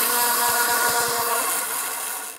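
Freehub of a time-trial bike's rear disc wheel buzzing as the spun wheel coasts, a fast dense ratcheting of the pawls that grows gradually quieter.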